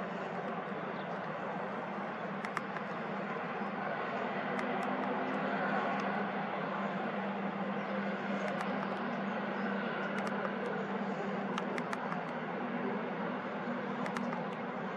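Steady outdoor background rumble with a low steady hum under it, and a few faint short ticks scattered through it.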